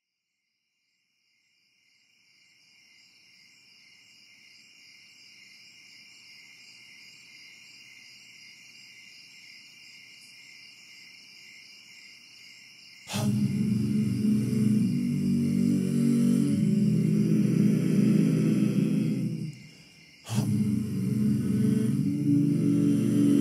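Crickets chirping fade in, a steady pulsing high chirr. About thirteen seconds in, layered wordless a cappella voices come in abruptly, holding a full sustained chord that shifts once, breaks off for a moment near the end and comes back.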